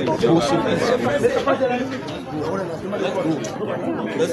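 Several people talking at once: overlapping, indistinct voices.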